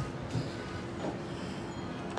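A steady low background hum with a faint steady tone running through it, and a couple of small soft knocks.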